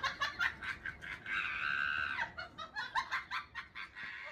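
A young man laughing hard in rapid bursts, with a long high-pitched squeal of laughter about a second in.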